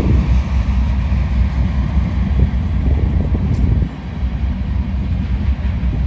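Freight train rolling past, a steady low rumble that eases off a little about four seconds in.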